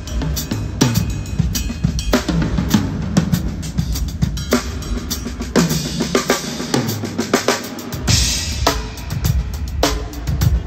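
DS Rebel maple-walnut drum kit played in a groove: kick drum, snare and tom strikes, with a cymbal crash about eight seconds in.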